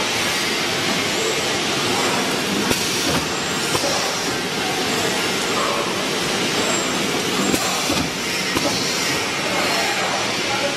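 SF-300LAC and SF-4525 shrink-wrapping machine running: a steady, loud hiss of fans and motors with a few sharp clicks from the mechanism.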